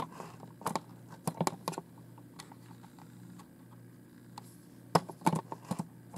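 Light clicks and taps in short clusters, about a second in, again around a second and a half, and loudest near the end, over a faint steady low hum.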